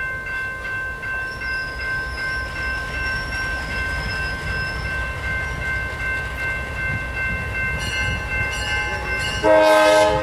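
Diesel freight locomotive rumbling slowly toward a grade crossing while the crossing bell rings steadily. Near the end the locomotive's horn sounds a loud, sustained blast.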